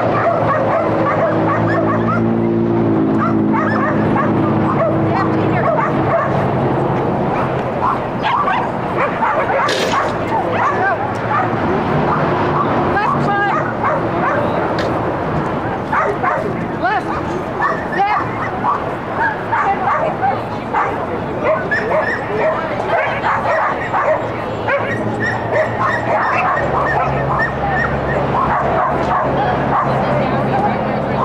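Dogs barking over and over in short, frequent barks, with people talking in the background.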